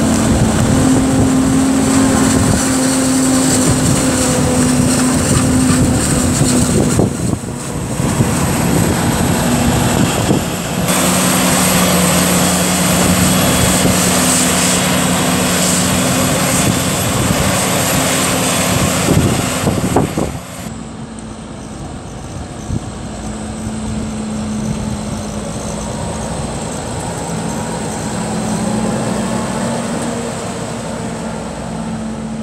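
Heavy diesel engines of a Claas Jaguar forage harvester and a Fendt 724 tractor running steadily while chopping maize, with a dense hiss of crop over the engine drone. About twenty seconds in it turns quieter and duller: a single tractor engine running.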